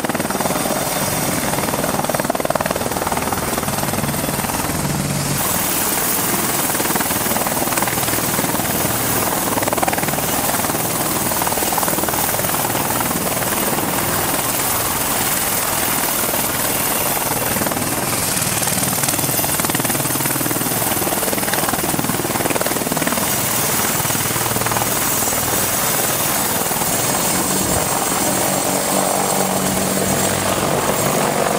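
Boeing AH-64 Apache attack helicopter running steadily in a low hover: the chop and rush of its four-blade main rotor over the even noise of its twin turboshaft engines, with a faint high turbine whine on top.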